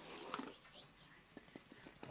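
A quiet, whispery "come on" followed by a few faint clicks of a Magic 8-Ball being handled while its answer is awaited.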